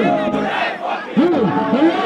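A large crowd shouting, with a man's voice amplified through a microphone calling out over it in short shouted phrases.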